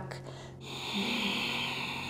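A woman's long, audible exhale, a soft breathy hiss starting about half a second in, as she rounds her back in cat pose.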